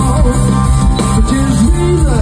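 Rock band playing live through a loud PA: electric guitars, bass and drums in an instrumental passage between sung lines.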